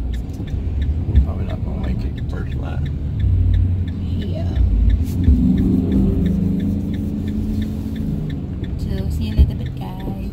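Ram ProMaster van driving, heard from inside the cabin: a steady low engine and road rumble, with a regular light ticking over it.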